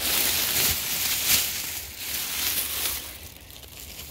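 Plastic shopping bag crinkling and rustling as yarn cakes are tipped out of it, dying down about three seconds in.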